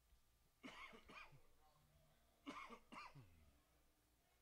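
Near silence broken by two faint, short human vocal sounds about two seconds apart, like coughs or throat-clearing.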